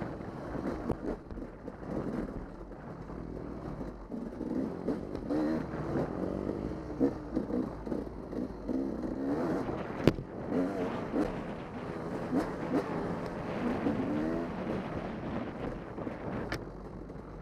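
Dirt bike engine running under way, its pitch rising and falling as the throttle opens and closes, with a sharp knock about ten seconds in.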